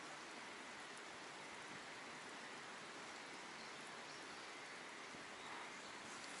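Faint, steady hiss of water drops pattering on a still water surface.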